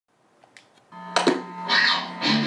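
Opening of a guitar demo recorded on a phone: a few faint clicks, then from about a second in a held guitar note rings, with a couple of sharp knocks and a strum near the end.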